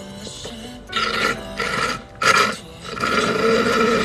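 Drink being sucked up through a plastic straw from a cup: three noisy slurping bursts, the last and longest near the end, over background music.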